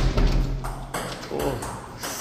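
Table tennis ball clicking off the paddles and table during a rally, several sharp hits with a brief echo in a large tiled room.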